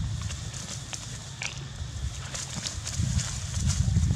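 Uneven low rumble on the microphone of a handheld camera outdoors, with scattered light clicks and rustles. One short high squeak, likely from one of the young macaques, comes about one and a half seconds in.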